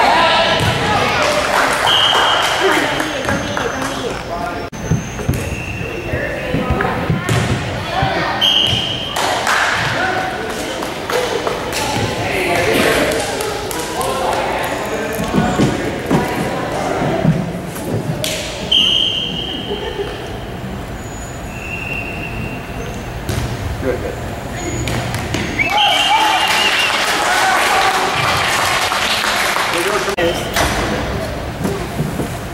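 Volleyball match in a reverberant gymnasium: a steady murmur of voices from players and spectators, broken by sharp thuds of the ball being hit and landing. Several brief high-pitched squeaks cut through the noise.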